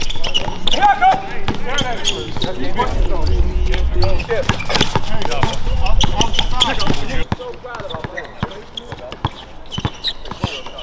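A basketball being dribbled on an outdoor hard court, sharp repeated bounces, with players' voices calling out over the play. The sound gets quieter after about seven seconds.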